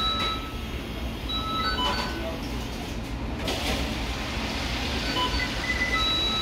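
Fast-food restaurant kitchen ambience: a steady low hum of equipment and general din, with short electronic beeps from the kitchen equipment sounding several times, near the start, about two seconds in and again near the end.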